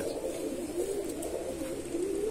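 Indian fantail pigeons cooing, several low, wavering coos overlapping.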